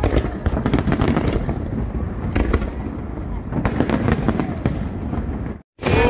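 Fireworks going off in a rapid, irregular series of bangs and crackles over a continuous low rumble. The sound cuts out for a moment just before the end.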